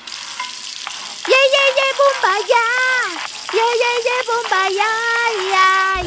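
Shower head spraying water, a steady hiss, and from about a second in a high voice humming a wordless tune over it in held, wavering notes.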